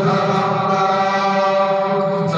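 Hindu puja mantra chanting, with a voice holding one long, steady note.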